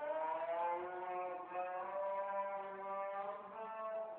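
Cattle lowing: one long, drawn-out moo of about four seconds, its pitch wavering slightly.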